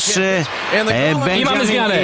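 Only speech: a man's voice talking in sports commentary over the match.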